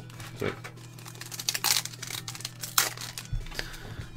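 Foil Yu-Gi-Oh Millennium Pack booster wrapper crinkling and crackling as it is taken from the box and handled to be opened, with the sharpest crackles about halfway through.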